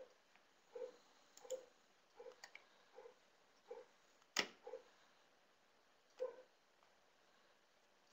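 Faint, scattered soft clicks from someone working a computer, with one sharper click about halfway through; otherwise near silence.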